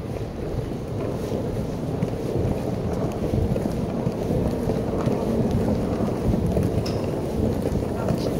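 Low, uneven rumbling of handling noise on a phone microphone as the phone is carried and swung about, with a few faint ticks.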